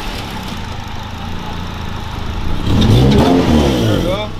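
Acura RSX's K24 four-cylinder engine idling steadily, then revved once about three seconds in, its pitch rising and falling back. The engine is being run to check the charging system, and the alternator is found to be going bad.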